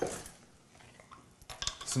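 Clinks and light clicks from a glass jar of capers and its lid being handled after a struggle to get it open: one sharp clink at the start, then a few small clicks near the end.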